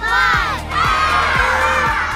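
Children's voices shout the last number of a countdown, then break into a long cheer, over upbeat music with a steady beat.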